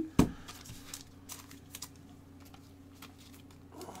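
Quiet room tone: a low steady hum, with a sharp click just after the start and a few faint ticks after it.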